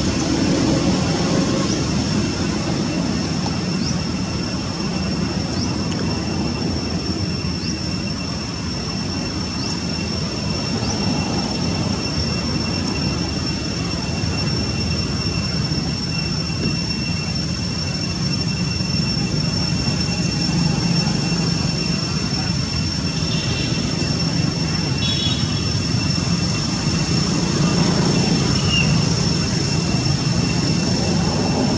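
Steady outdoor background drone with a constant high-pitched whine, broken by a few brief high chirps, with a short high call at about two-thirds of the way in.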